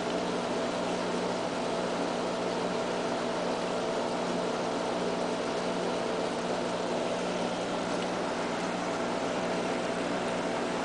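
Steady machine hum: a few held tones over an even hiss, with no change in level.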